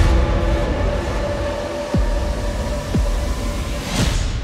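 Dark suspense soundtrack: a heavy low rumble under a steady drone, with swooping bass drops that fall sharply in pitch right at the start and again about two and three seconds in.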